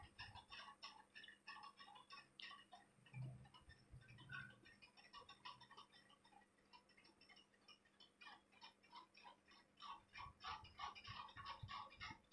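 Very faint, irregular scratching and ticking of a pen drawing lines on notebook paper, with a few slightly louder light taps near the end.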